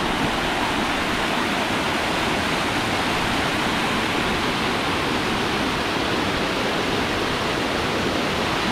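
A small waterfall, water rushing and splashing in a steady, even roar.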